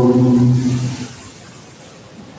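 A man's voice chanting the liturgy on one steady reciting pitch, stopping about a second in, followed by a pause with only faint room tone.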